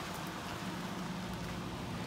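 Ford Crown Victoria's V8 engine idling steadily, a low even hum under a light outdoor hiss.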